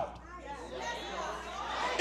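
Faint murmuring voices in a large hall during a pause in loud speech.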